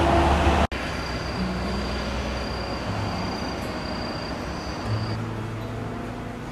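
Loud road traffic noise from passing lorries and cars, cut off abruptly less than a second in. Quiet background music with long held low notes follows.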